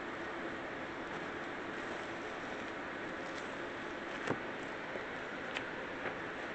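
Steady low hiss of room noise, with two faint ticks near the end as a paper print is peeled off a gel printing plate.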